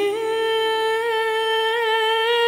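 A woman's voice holding one long sung note in a Neapolitan neomelodic song, steady in pitch after a small rise at the start, with a slight wavering near the end. The backing underneath is sparse, with no bass.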